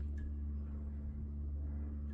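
A steady low hum, unchanging throughout, with no other distinct sound.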